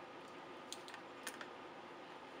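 A few soft clicks and light handling noise from fingers working a paper flip's button-and-cord closure on a scrapbook mini album.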